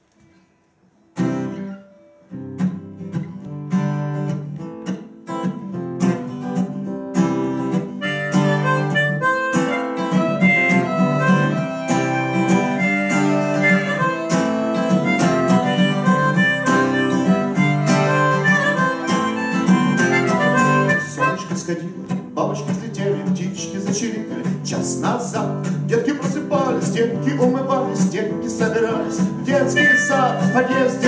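Acoustic guitar starting about a second in after a brief pause, soon joined by a harmonica playing a melody of held notes as an instrumental introduction to the song. The strumming gets denser near the end.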